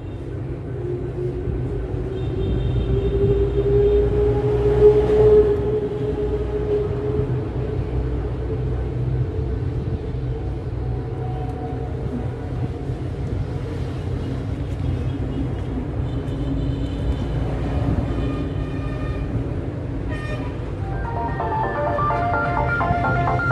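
Steady low rumble of motor traffic, swelling with a passing vehicle's engine note to its loudest around four to five seconds in, then settling back to a steady drone. Music starts near the end.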